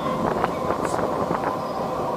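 Steady rush of airflow over a glider's canopy in flight, heard inside the cockpit, with a faint steady tone and a few faint clicks.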